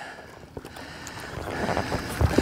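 A spinning rod being cast: a faint swish of the rod and line paying out, under light wind noise that grows louder towards the end.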